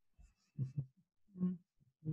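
A man's low murmuring voice: two short hums or mumbled syllables, one a little over half a second in and one about a second and a half in.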